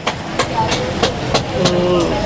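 About six sharp metallic clicks, roughly three a second, from metal tongs knocking on a wire grill over charcoal as duck bills are turned. Voices and market noise run underneath.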